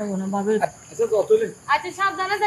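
Steady high-pitched chirring of insects, heard under spoken dialogue.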